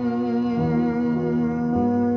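A man humming one long held note over piano chords, which change about half a second in and again near the end. The piano is one its player calls completely detuned.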